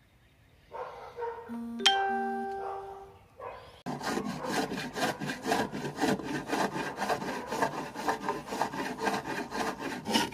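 A brief chime-like ringing tone about two seconds in. Then, from about four seconds, a wooden beam hand-sanded with a sanding block: quick, even back-and-forth rubbing strokes.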